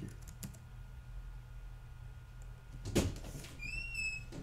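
A few faint computer keyboard keystrokes, with a sharper click about three seconds in, over a low steady hum. A brief high squeak comes near the end.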